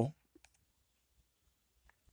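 Near silence with a few faint, short clicks, about half a second in and again near the end.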